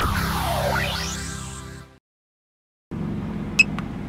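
A short electronic music sting: a held low chord with a sweeping tone that dips and then rises steeply, fading out about halfway. After a second of silence, the steady in-cab road hum of the pickup comes back, with a brief click.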